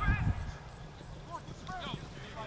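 Short shouts from rugby players in open play, with low thuds in the first half second.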